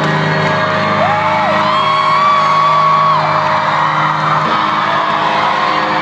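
Live rock band holding a sustained chord that rings steadily, with the crowd whooping and cheering over it; a couple of long rising-and-falling whoops stand out about a second in and through the middle.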